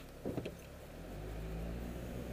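Car engine heard from inside the cabin, picking up as the car pulls away from a stop, a low drone that grows louder from about a second in and then holds steady.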